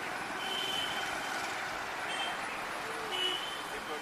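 Steady road traffic noise, with three short high-pitched tones about half a second in, two seconds in and three seconds in.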